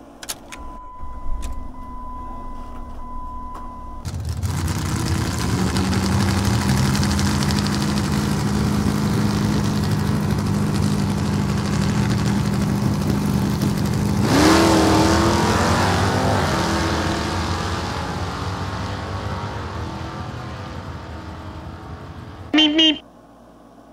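A car engine, laid over the picture. It comes in about four seconds in, after a steady high tone with a few clicks, and runs at a steady idle. About fourteen seconds in it revs up sharply, then settles and fades out.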